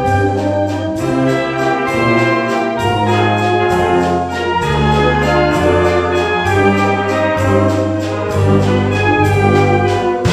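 Amateur wind band playing live, brass to the fore, a medley of German TV theme tunes, with a bass line moving note by note under held chords and a steady beat.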